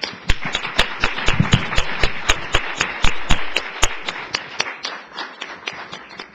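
Audience applauding, starting at once, with a few loud individual claps standing out, and thinning out over the last second or two.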